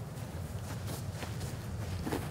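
Steady low background hum with a few faint, soft thuds of footsteps on grass.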